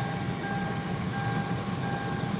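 Inside a car, a repeating electronic beep: long steady tones of about two-thirds of a second, each followed by a short break, over a low steady hum.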